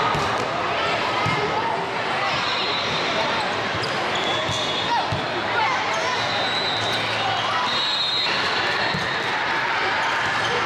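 Volleyball being struck during a rally in a large hall: a jump serve and a few sharp hits of the ball, spread through the rally. Under them runs a steady din of many voices from players and spectators.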